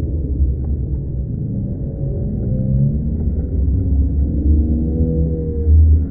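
Dull, muffled water rumble through a phone microphone at or just below the surface of a pool, with no high sounds, and faint muffled voices rising and falling behind it.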